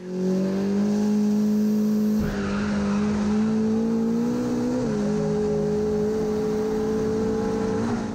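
Turbocharged Volvo 940 drag car's engine held at high, steady revs, heard from inside the cabin, with tyre noise joining about two seconds in as the rear tyres spin in a smoky burnout. The pitch creeps up, dips slightly about five seconds in, then holds.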